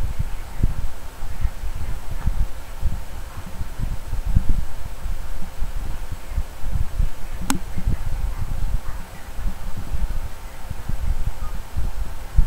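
Handling noise as hands work a stretchy headband onto a silicone reborn doll's head: low, irregular bumps and rustling, with one sharp click about halfway through.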